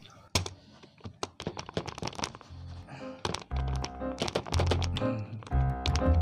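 Irregular clicks of typing on a computer keyboard, joined about three and a half seconds in by music with a heavy bass.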